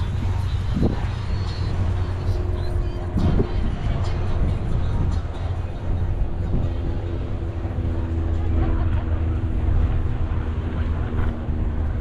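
Beach ambience heard while walking: a steady low rumble of wind on the microphone, with faint voices of people in the background.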